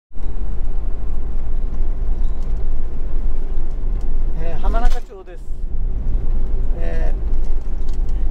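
Steady low rumble of a camper van's road and engine noise heard from inside the cab while driving, dipping briefly about five seconds in. A voice makes short sounds about halfway through and again near the end.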